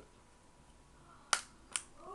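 Two sharp clicks about half a second apart, the first louder, as a Krusell leather booklet phone case is folded back into its stand position and snaps into place.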